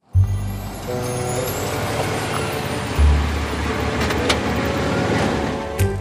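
An SUV driving up, its engine and tyres running steadily after a sudden start, over background music with a deep bass note that comes in about halfway through.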